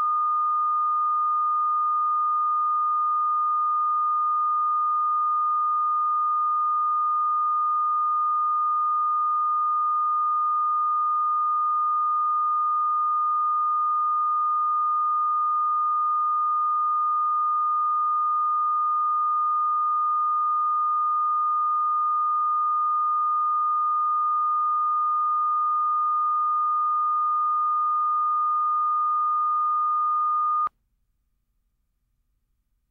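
Steady, unbroken line-up test tone, a single pure pitch, laid with colour bars at the head of a broadcast tape to set audio levels.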